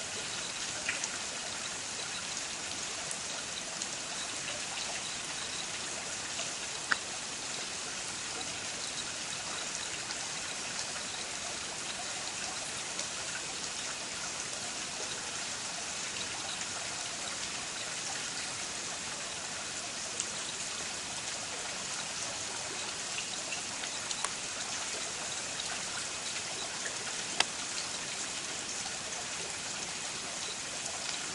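A steady, even hiss with a few sharp clicks, the loudest about seven seconds in and a few seconds before the end.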